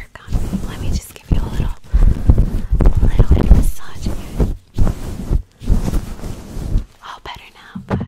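Gloved fingers rubbing and scratching the furry windscreen of a microphone, giving loud, muffled, rumbling scrunches in uneven strokes with brief pauses, an ASMR mime of picking lice from hair.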